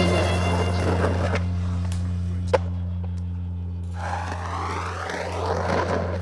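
Skateboard wheels rolling on asphalt, swelling louder in the last two seconds as the board approaches. A sharp click comes about two and a half seconds in, over a steady low hum.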